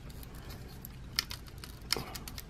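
A few faint clicks of small plastic parts as the hinged claw gauntlet on the hand of a WarGreymon action figure is moved, about a second in and again near the end.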